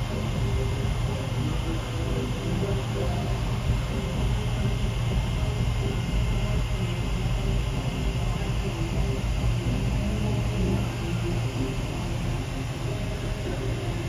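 Steady low rumble inside a moving cable car gondola, with a faint thin high tone running through it.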